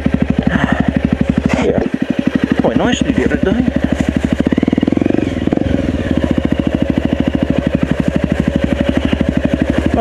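Enduro dirt bike engine running at low revs with a fast, even pulsing beat, with a short swell in the engine note about five seconds in as the bike moves off slowly along the trail.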